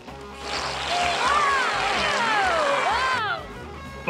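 Cartoon sound effect of high-pressure spray guns firing streams of glue: a loud hiss that starts just after the beginning and cuts off a little after three seconds, with sliding whistling tones rising and falling over it.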